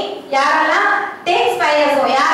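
Only speech: a woman speaking into a microphone, delivering a speech in Tamil.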